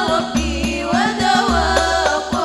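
Al-Banjari sholawat music: girls' voices singing a gliding Arabic-style melody through microphones over a quick rhythm of hand-struck frame drums, with deep bass-drum strokes every half second or so.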